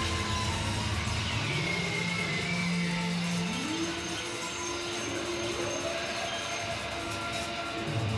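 Live improvised band music in which a sustained note glides upward in pitch twice, each time about an octave higher, with thin high whistling slides above it. The low drone underneath drops out and comes back in at the end.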